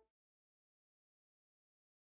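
Digital silence: the last trace of the closing music dies away right at the start, then nothing at all.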